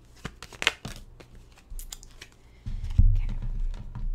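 A tarot deck being shuffled by hand: quick papery flicks and rustles of the cards, then heavy thumps against the table from near three seconds in.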